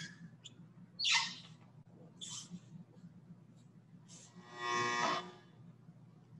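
A few brief rustles and breaths as a person shifts position on an exercise mat, over a low steady hum, then a drawn-out spoken 'okay' near the end.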